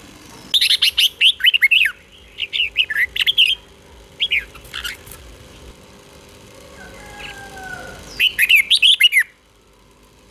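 Red-whiskered bulbul singing its doubled ('เบิ้ล') song in four bursts of quick, high whistled notes, with a gap of about three seconds before the last burst near the end.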